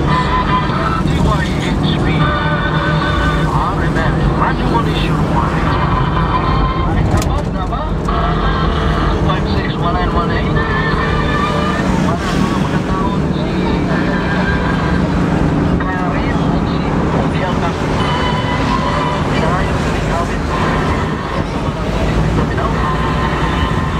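Engine and road noise from inside a moving vehicle, a steady low hum throughout, with people's voices over it.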